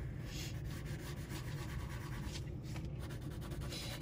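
Pencil lightly shading on paper: a faint, steady scratching made of many short strokes.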